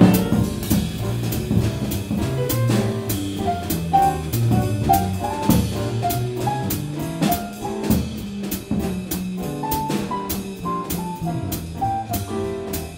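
Jazz piano trio playing: grand piano melody over upright bass, with the drums keeping time in steady cymbal strokes.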